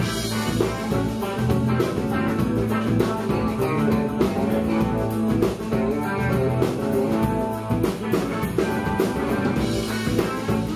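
Live band playing an instrumental passage: an electric guitar over a drum kit.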